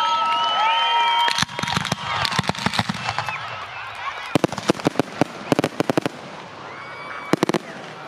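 Aerial fireworks going off: a dense run of crackling bangs about a second and a half in, then a string of separate sharp reports from about four to six seconds, and a short tight cluster of bangs near the end.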